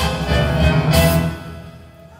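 String orchestra with timpani playing copla accompaniment. It breaks off about a second and a half in and the sound dies away.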